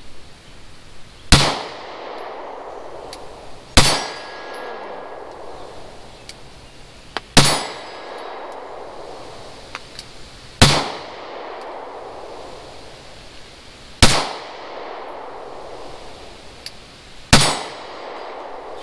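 Semi-automatic pistol fired six times in slow, aimed succession, one shot every three seconds or so, each sharp report trailing off briefly.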